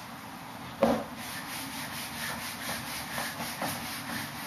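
A knock a little under a second in, then a whiteboard being wiped clean, the eraser rubbing across the board in repeated back-and-forth strokes.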